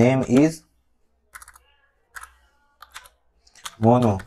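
Computer keyboard being typed on: a few scattered, separate keystrokes between about one and three seconds in, with short bits of speech at the start and end.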